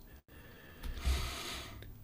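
A man drawing one breath, about a second long, between sentences of his talk.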